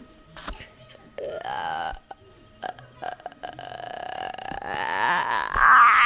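A boy making a put-on, burp-like vocal noise close to the phone's microphone: a short note about a second in, then a long held note from about three seconds in that gets louder and wavers near the end. A few light knocks from the phone being handled.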